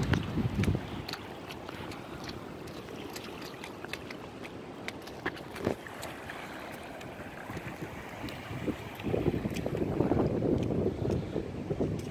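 Wind buffeting the microphone over scattered footsteps on wet asphalt and floodwater lapping at the road's edge; the wind noise grows louder near the end.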